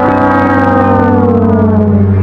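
A loud, low, brass-like note held long, its pitch sagging slowly. It is the drawn-out last note of a descending 'sad trombone' style sound effect that mocks a loss.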